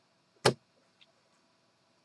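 A single short, sharp click about half a second in.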